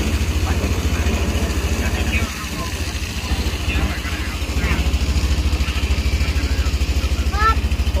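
A boat's engine running steadily under way, a fast low throb that eases off for about a second a couple of seconds in and then picks up again. Voices talk faintly over it, with a voice clearer near the end.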